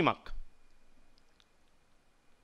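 A man's amplified voice ends a word in the first half-second. Then comes a pause of near silence with a few faint clicks a little over a second in.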